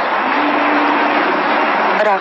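Steady loud rushing noise with a low hum held through most of it.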